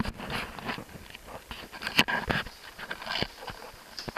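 Handling noise as a camera is passed from hand to hand: irregular knocks, clicks and crunchy rustles. The loudest is a sharp knock about two seconds in.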